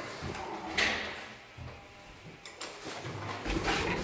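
Metal landing door of an original Zremb passenger lift: the handle latch clicks and the door is pulled open, with a noisy swing about a second in and scattered knocks. A low rumble builds near the end as the lift car is entered.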